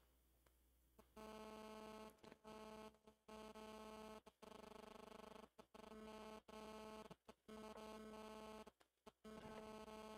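Near silence: a faint steady hum that cuts in and out.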